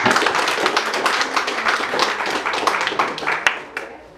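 Audience applause for an announced award: many hands clapping quickly and densely, thinning out and dying away near the end.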